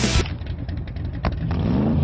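A car engine running, then revving with its pitch rising over the last half second, with a sharp click just over a second in. Pop music ends abruptly about a quarter second in.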